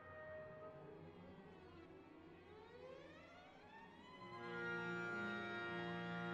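Symphony orchestra playing: the strings slide upward together in slow rising glissandi through the middle, then a louder sustained chord enters about four seconds in and holds.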